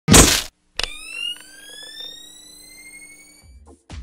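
Electronic intro sound effects: a short, loud burst of noise, then a sharp hit followed by a tone that glides slowly upward for about two and a half seconds. A low bass and another hit come near the end as music kicks in.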